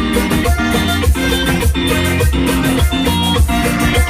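A live band plays with button accordion, electric guitar, bass guitar and hand percussion over a steady dance beat of about two beats a second.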